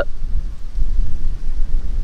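Wind buffeting the microphone: a loud, uneven low rumble with no distinct events.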